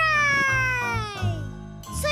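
A young girl's voice in one long call that slides steadily down in pitch over about a second and a half, over soft background music.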